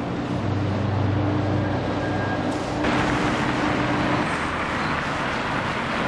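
Busy city street traffic, with cars and buses running past. A low engine hum is heard for the first few seconds. About three seconds in, the road noise turns brighter and a little louder.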